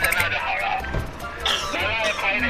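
A young man laughing hard in a rapid "ha-ha-ha", over background music.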